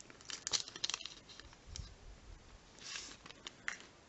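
A shiny Panini sticker packet being torn open and its wrapper crinkled: a cluster of sharp crackles in the first second, then another crinkly burst about three seconds in.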